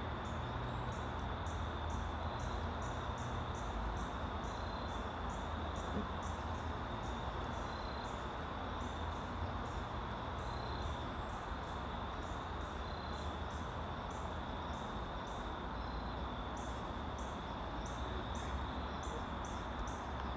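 Insects chirping outdoors at dusk: short high chirps repeating about twice a second, with a steady high trill running underneath.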